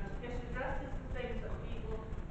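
Speech only: a woman speaking in a formal address, over a steady low rumble.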